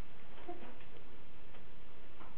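Steady hiss of the recording's background noise, with a few faint ticks.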